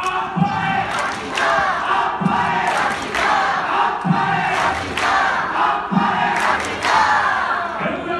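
A yosakoi dance team chanting and shouting in unison, with a deep thump about every two seconds keeping time.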